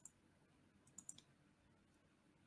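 Computer mouse clicks: one click at the start and two quick clicks about a second in, with near silence between them.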